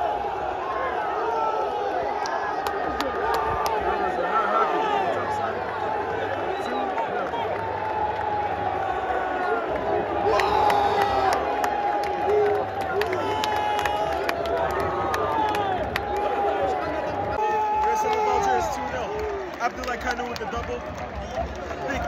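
Large stadium crowd of football supporters cheering and chanting together in celebration of a goal, many voices overlapping at a steady level, dipping briefly near the end.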